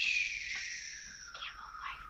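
A person's long breathy, whispered exhale that starts suddenly, slides down in pitch and fades away.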